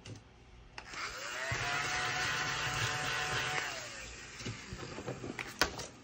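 A small electric motor whirs up about a second in, runs steadily with a whine for about three seconds, then winds down, followed by a few light clicks.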